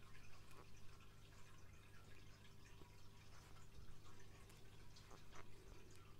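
Near silence: a steady low room hum with a few faint, scattered ticks of wooden knitting needles as stitches are worked in fluffy yarn.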